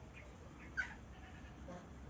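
Faint calls of farm animals in the background, with one brief sharp sound just under a second in.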